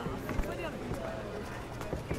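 Faint voices with a few soft low thumps, one about half a second in and one near the end.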